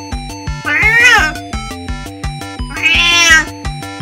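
A 20-year-old calico cat meowing twice, each call under a second long and rising then falling in pitch, over background music with a repeating melody.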